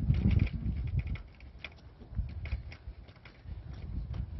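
Irregular light clicks and scuffs of a walker's legs and slow shuffling footsteps on asphalt, with a low rumble of wind on the microphone during the first second.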